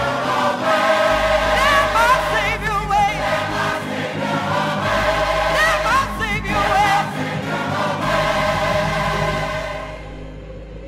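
Gospel mass choir singing in full harmony, with a lead voice's wavering vibrato standing out above the choir. The music falls away right at the end.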